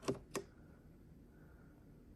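Two short clicks, a third of a second apart, as a 12 V cigarette-lighter plug is pushed into a portable power station's 12 V socket, then near silence.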